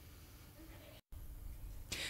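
Faint room tone with a low hum from the microphone, cutting out to dead silence for an instant about halfway through.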